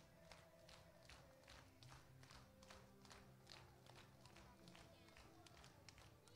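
Scattered hand clapping from a small group: uneven sharp claps, several a second, over a faint held tone from the band.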